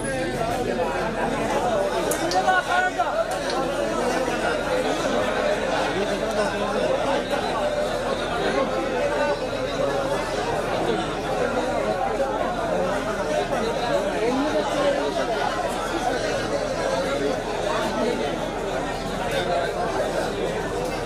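Crowd chatter: many voices talking over each other at once, steady throughout, with no single voice standing out.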